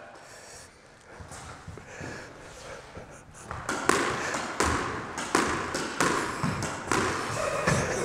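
A squash ball volleyed against the front and side walls in turn: a quick run of sharp racket and wall hits, starting about halfway through.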